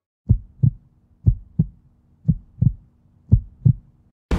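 A heartbeat sound effect: four double thumps, lub-dub, about one a second, over a faint low hum.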